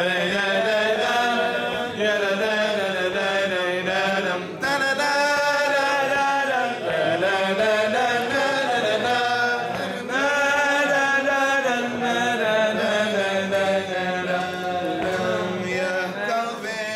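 A male cantor sings an unaccompanied, ornamented vocal passage in maqam Rast, holding long wavering notes in long phrases. The phrases break briefly about four and a half and ten seconds in. A steady low drone runs underneath.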